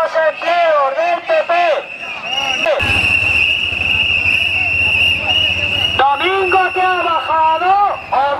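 A voice, then about three seconds in, one steady, high, shrill whistle blast of about three seconds, then the voice again.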